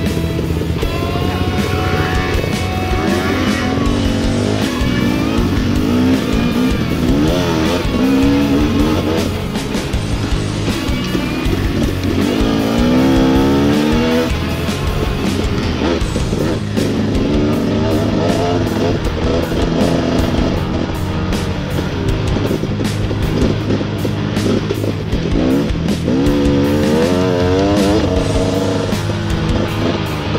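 Dirt bike engine revving up and down repeatedly as the bike is ridden along a trail, with music playing underneath throughout.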